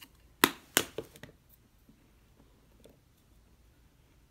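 Cinnamon spice jar handled over a glass mixing bowl: two sharp knocks about a third of a second apart, half a second in, then a few faint ticks and low room tone.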